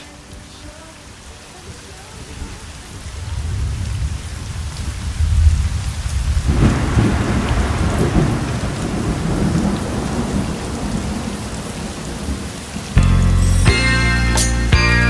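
Recorded thunderstorm: rain falling with thunder, a low rumble building a few seconds in and swelling into a long rolling peal around the middle. Music comes in near the end.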